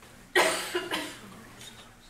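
A person coughing: a sudden first cough about a third of a second in, then two quicker, weaker ones that fade.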